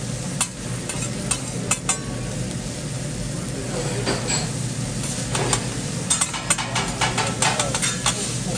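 Metal spatulas scraping and clicking against a steel teppanyaki griddle as fried rice is chopped and turned, over a steady sizzle from the hot plate. The clicks come in quick clusters, densest in the second half.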